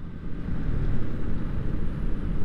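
Steady riding noise from a Honda motorcycle cruising along a road: a low rumble of engine and road noise under a noisy rush, with no distinct events.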